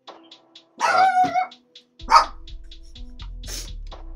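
A dog barks loudly once about a second in, over background music with a steady ticking beat. A second sharp, loud sound follows about two seconds in, as a deep bass beat comes into the music.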